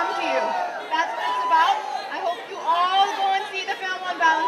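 Speech with crowd chatter: several voices, some fairly high-pitched, rising and falling, with no other sound standing out.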